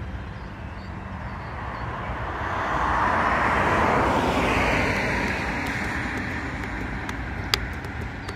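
A car passing by: a smooth rush of tyre and engine noise that swells to a peak three to four seconds in and then slowly fades. A sharp click comes near the end.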